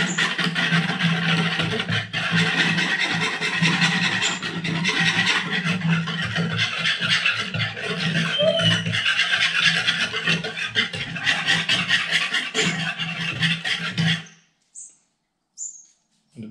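A whisk beating a thin soy sauce and Worcestershire marinade in a container to dissolve the salt, sugar and spices. It makes fast, continuous scraping strokes that stop abruptly about fourteen seconds in.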